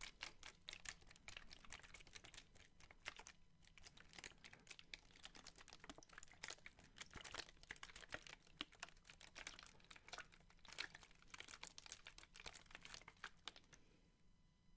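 Thin plastic water bottles handled and shaken in both hands close to the microphone, the plastic crinkling in faint, dense, irregular crackles.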